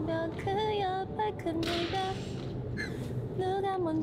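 A young woman singing short lines in Korean without accompaniment, the pitch held and gliding from note to note.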